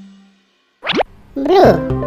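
A quick rising whistle-like sound effect about a second in, then a short high-pitched voice, as an upbeat electronic music track with a steady beat starts.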